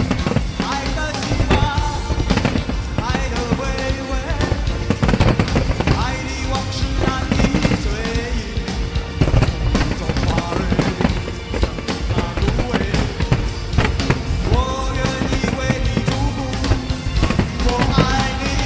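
Fireworks going off in many sharp bangs, one after another, over loud music that plays throughout.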